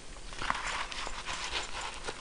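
Nylon microfiber wallet rustling, with light irregular clicks as a small compact camera is pushed down into one of its pockets.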